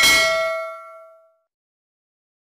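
A notification-bell 'ding' sound effect, struck once and ringing out with a fading chime over about a second and a half.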